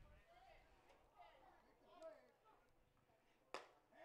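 Near silence with faint, distant voices, then a single sharp pop about three and a half seconds in: a pitched baseball smacking into the catcher's mitt for a called strike.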